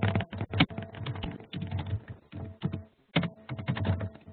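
Computer keyboard typing heard over a conference-call line: rapid, irregular key clicks with a brief pause about three seconds in, over a faint steady hum.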